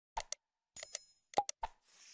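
Sound effects of a like-and-subscribe animation: a few short clicks and pops, a brief bell-like ding about a second in, and a whoosh starting near the end.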